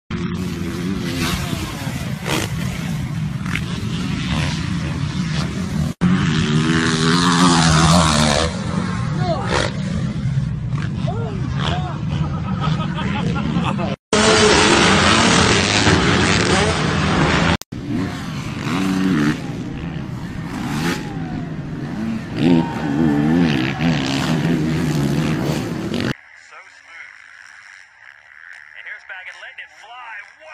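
Motocross dirt bike engines revving up and backing off across a run of short, abruptly cut clips, with people's voices over them. Near the end the sound drops to a quieter, thinner stretch.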